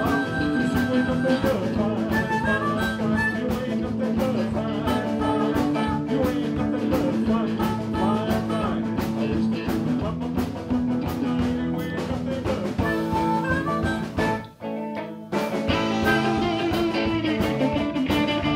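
Live blues band playing: electric guitars, bass, drum kit and amplified harmonica. The band stops dead for about a second near the end, then comes back in.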